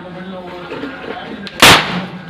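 A homemade 'aloo bomb' cap firecracker, made of toy-gun cap packets and small stones, goes off once with a sharp, loud bang on a concrete floor about one and a half seconds in, followed by a short ringing tail.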